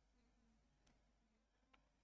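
Near silence: room tone, with a couple of very faint ticks.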